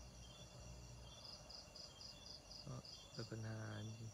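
Night insects, likely crickets, calling: several steady high trills, with a pulsed high chirp repeating about five times a second from about a second in.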